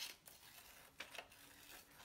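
Scissors snipping through paper: a few faint, short cuts, two of them close together about a second in.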